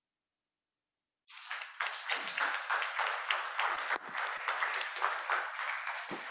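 Audience clapping, starting suddenly a little over a second in after dead silence.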